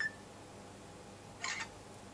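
Handling noise on the bench: a short light clink at the very start, then a brief rustle or scrape about a second and a half in, over a faint steady hum.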